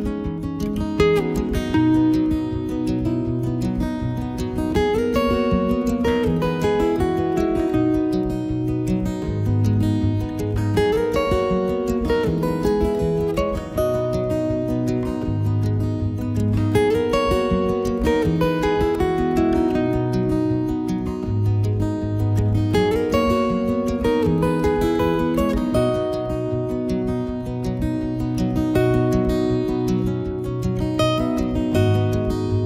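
Background music led by strummed acoustic guitar.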